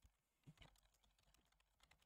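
Very faint computer keyboard typing: a run of quick key clicks as a line of text is typed.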